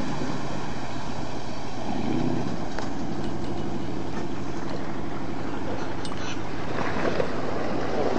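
Inboard engine of a classic wooden speedboat running steadily under way, mixed with the steady rush of water along the hull.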